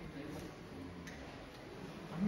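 Faint murmur of people's voices in the background, with two light clicks, about half a second and a second in.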